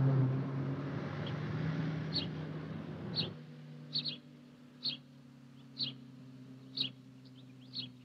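A small car engine running as the car drives away; its hum is loud at first, then drops sharply about three seconds in and carries on faintly. A short high chirp, likely a bird, repeats about once a second throughout.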